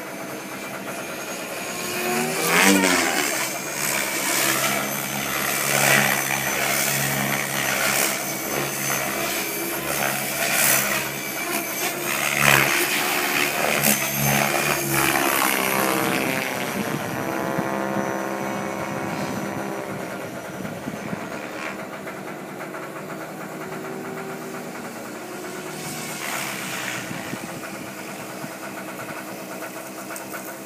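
KDS Agile 7.2 RC helicopter's main rotor and drivetrain in hard 3D flight, the blade noise surging up and down in level. From about halfway the pitch falls away steadily as the rotor winds down in an autorotation descent, leaving a quieter, steady spin to the end.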